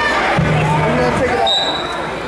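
Spectators talking and calling out in a large, echoing gymnasium. A low steady hum comes in about half a second in, and a brief high-pitched tone sounds near the end.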